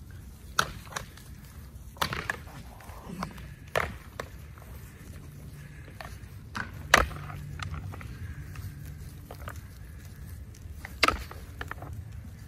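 Goats butting heads in play, their horns clacking together in several sharp knocks at irregular intervals, the loudest about seven seconds in.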